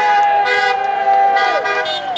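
A vehicle horn held in one long blast that drops off near the end, over shouting from a crowd.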